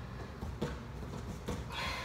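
Low room hum with two faint knocks, then a short, breathy exhale from the exercising woman near the end.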